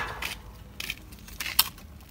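Handling noise close to the microphone: a few short crackles and clicks, the loudest pair about one and a half seconds in, as a bare-root tree's dry roots and soil are touched and moved.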